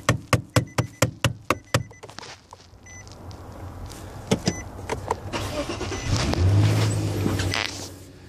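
Quick light hammer taps, about four a second, on a Nissan/Infiniti steering lock control unit under the dash, to jolt the failing unit through its shutdown cycle so the car will start, with an electronic beeping over them. Near the end the Infiniti's engine cranks and starts.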